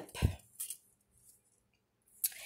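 A thick collaged page of a three-ring binder being turned over: a short thump about a quarter second in, followed by a faint brief paper rustle.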